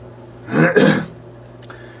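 A man's short throat-clearing cough, in two quick parts, about half a second in.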